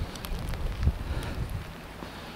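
Wind buffeting the microphone as rain falls, an uneven low rumble with a stronger gust a little under a second in.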